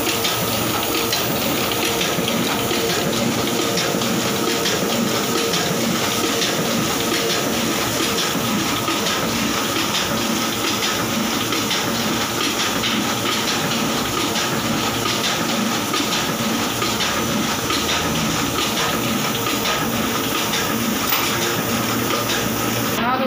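Two-colour offset printing machine running steadily while printing non-woven carry bags: a continuous, even mechanical rushing noise with a faint steady hum underneath.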